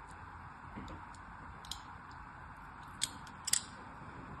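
Thin blade cutting into a scored bar of hard, dry soap: a few scattered crisp clicks and crackles, the two loudest near the end.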